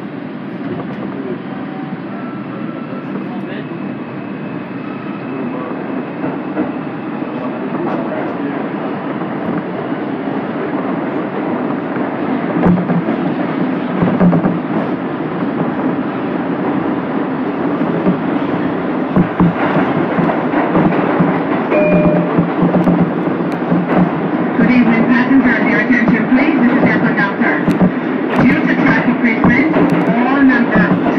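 Bombardier R142 subway car pulling out of a station and gathering speed into the tunnel, heard from inside the car: a running rumble that grows steadily louder, with wheels knocking over rail joints from about halfway through.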